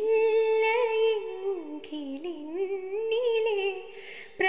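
A woman singing unaccompanied, holding long notes with vibrato that glide up and down, with a short break for breath about two seconds in.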